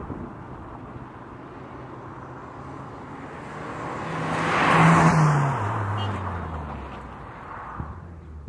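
A 2005 Mitsubishi Colt CZT, its turbocharged 1.5-litre four-cylinder engine running, drives past: engine and tyre noise swell to a peak about five seconds in, and the engine note drops in pitch as the car goes away.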